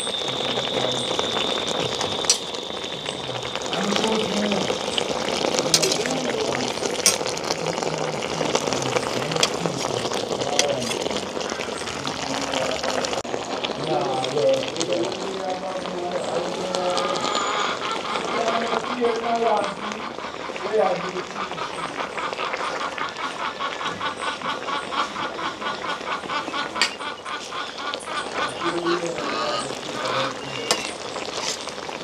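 Indistinct voices talking in the background of an outdoor cooking scene, with occasional clinks of a metal spoon against a steel pot. A steady high tone is heard at first, and a rapid, even chirping starts about halfway through and runs on almost to the end.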